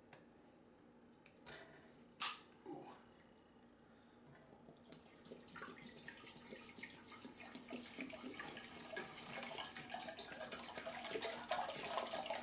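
Vinegar poured from a plastic jug into a stainless steel saucepan: a splashing stream that starts a little before halfway and grows steadily louder. Two sharp clicks come earlier, while the jug is being opened.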